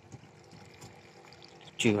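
Faint, steady outdoor background noise with no distinct sound events, then a man's voice begins near the end.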